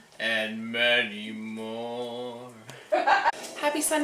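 A man's voice holding one long, low, drawn-out note for about two and a half seconds, followed by a brief burst of talk near the end.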